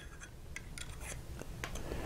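Fountain pen cap being pushed onto the end of the barrel to post it: faint rubbing with a few small clicks.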